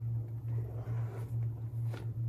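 Soft rustling as a hand rummages in a small backpack, heard over a steady low hum.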